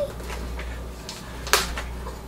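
A single sharp knock about one and a half seconds in, over a low steady hum.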